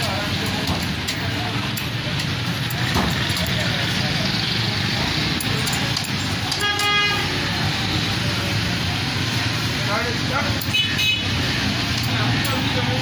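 Steady street traffic noise with a single vehicle horn toot, held for about half a second, roughly seven seconds in. A shorter, higher toot follows near the end.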